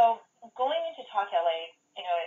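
A woman speaking in short phrases over a telephone line, her voice thin, with nothing above the phone band.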